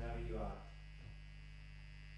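Steady low electrical mains hum from the guitar and bass amplifiers, dropping to a quieter level about half a second in. A brief tail of a voice is heard at the very start.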